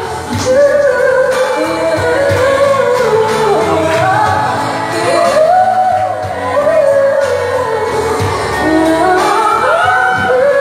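A woman singing a slow pop ballad over accompaniment, holding long notes and bending them with runs and ornaments.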